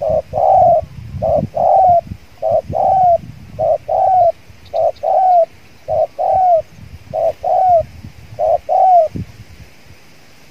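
Spotted dove cooing: a short note and then a longer coo that curves down in pitch, repeated eight times at about one a second, stopping about a second before the end.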